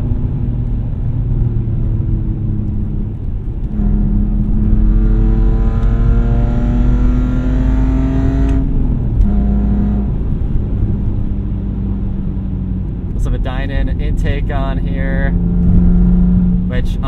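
BMW E46 330xi's 3.0-litre straight-six with eBay headers and a muffler delete, heard from inside the cabin while driving. Its pitch climbs steadily under acceleration for about four seconds, drops suddenly, then holds steady at a cruise.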